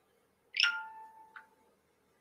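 A single electronic notification chime: a short ding whose tones fade out over about a second, followed by a faint click.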